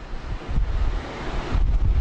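Low rumble and hiss of air hitting the podium microphone, like a breath blown into it, swelling about half a second in and again near the end.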